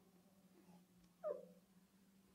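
Near silence with a faint steady hum, broken a little over a second in by one brief, rising squeak of a marker tip writing on a whiteboard.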